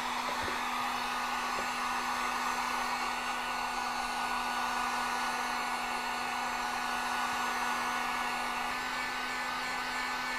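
Electric heat gun running steadily on its high setting, blowing hot air onto a plastic holster to soften it: an even blowing hiss over a steady motor hum.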